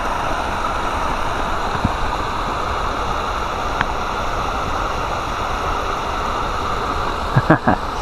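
Steady rush of water falling over a low spillway into a pool.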